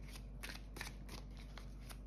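Faint handling of a deck of oracle cards in the hand: a scattering of soft clicks and light rustles, over a low steady hum.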